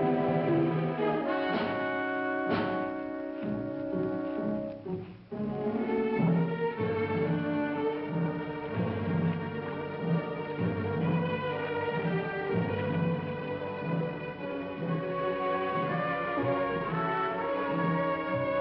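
Orchestral film score: sustained brass, with French horn prominent, over strings and a low repeating figure. It dips briefly about five seconds in, then carries on.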